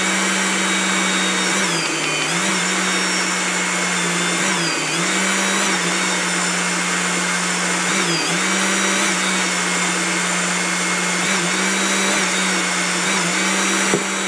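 Hydraulic torque pump running continuously at 3,500 psi setting, driving a torque wrench head tightening a flange stud nut. Its steady motor hum dips briefly in pitch and recovers every three seconds or so as the wrench works through its strokes under load.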